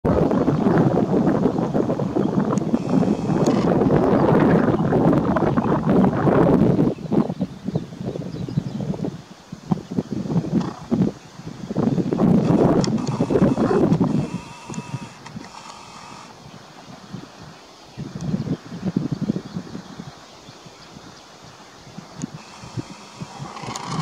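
Wind buffeting the microphone in gusts. It is strongest through the first seven seconds and again around twelve to fourteen seconds, then dies down to a lighter rumble.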